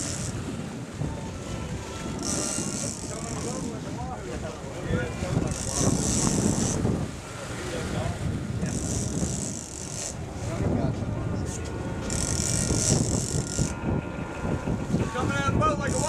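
80-wide big-game fishing reel sounding in repeated high buzzing bursts, each a second or so long, about every three and a half seconds, as the yellowfin tuna on the line is fought. The boat's engines run underneath.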